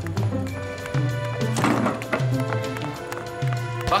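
Background music with a steady rhythmic beat and a repeating bass line.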